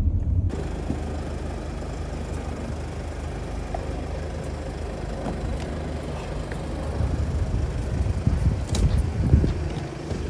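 Steady low rumble of vehicles in a city street, with a few knocks and a sharp click near the end.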